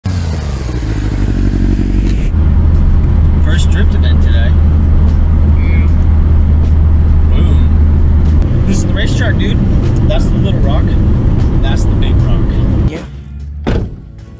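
Mini Cooper heard from inside its cabin while driving: a loud, steady engine and road drone that changes in character about eight seconds in and cuts off suddenly about a second before the end.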